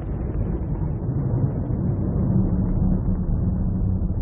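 Deep, steady rumbling drone of cinematic sound design, with a held low tone coming in about halfway through.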